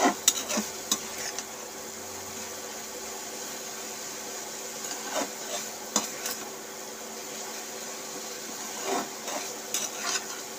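A spatula stirring grated coconut in a metal pan, knocking and scraping against the pan in bursts near the start, around the middle and near the end, over a steady low hiss.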